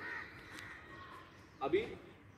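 A crow cawing near the start, a short harsh call, with a man's brief spoken word near the end.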